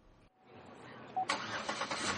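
A 2008 Chevrolet Impala's engine being cranked and started, coming in suddenly a little past a second in.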